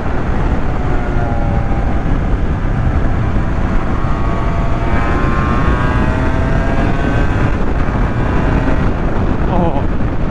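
Honda NS250R two-stroke V-twin engine running under load, its pitch rising about halfway through as the bike accelerates, heard through heavy wind noise on the microphone.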